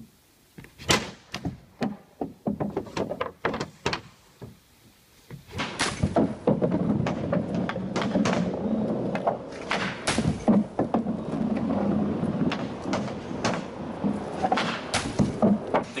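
Ice hockey stick and rubber pucks hitting a plastic shooting pad during slap-shot practice: a run of sharp knocks and clacks. About five seconds in, a louder steady noise comes in under further knocks.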